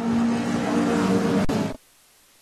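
Race car engine running steadily in the pit lane over general pit noise, with a single click about a second and a half in; the sound cuts off abruptly just before the end.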